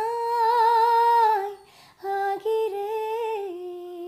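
A woman singing unaccompanied: a long held note with a slight vibrato, a short breath, then a second phrase that settles onto a lower held note.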